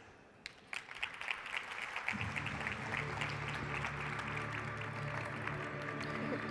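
Audience applause, scattered claps starting about half a second in, with music coming in underneath about two seconds in.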